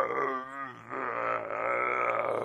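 A person's voice holding a long, low drawn-out groan. It wavers and drops off about half a second in, then picks up again and is held.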